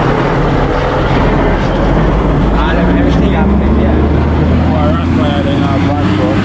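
Large diesel dump truck's engine running close by as the truck pulls away, a loud deep steady rumble that swells through the middle. Voices talk over it in the second half.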